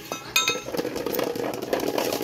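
Steel knife blade and a folded metal bottle cap clinking: one sharp ringing metal strike about a third of a second in, then a fast clatter of light metallic taps as the cap is flattened on the blade.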